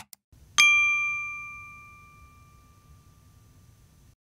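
A short click, then a single bright bell ding that rings out and fades over about three seconds: a notification-bell sound effect for clicking a channel's bell icon.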